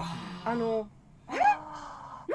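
Short breathy vocal sounds from a person: a breathy opening, a brief voiced sound, a pause about a second in, then a rising voiced exclamation.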